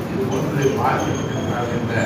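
A man speaking into the microphones in a reverberant room.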